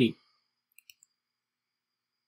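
Near silence broken by two faint, short clicks close together a little under a second in, typical of a computer mouse button being pressed.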